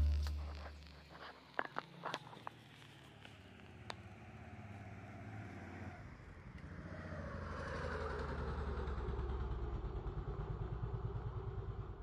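Background music fades out at the very start, then a few light clicks and taps. From about halfway, a passing vehicle's engine grows louder with a low pulsing, its pitch falling as it goes by.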